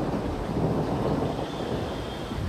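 Low, steady rumble of a thunderstorm, with wind buffeting the microphone.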